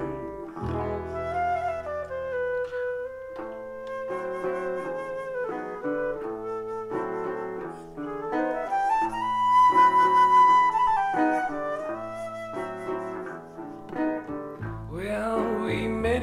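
Silver flute playing an instrumental break in a trad jazz style, over resonator guitar chords and ukulele bass. The melody climbs to a long held high note just past the middle, the loudest moment.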